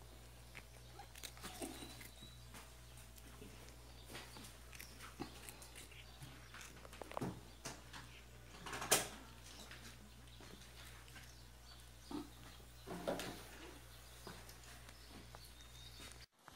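A cat chewing crunchy biscuit crumbs: faint scattered crunching clicks over a low steady hum, with a few louder crunches, the loudest about nine seconds in.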